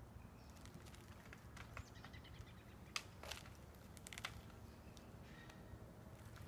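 Near silence with a few faint, sharp clicks and ticks, the sharpest about three seconds in and another about a second later.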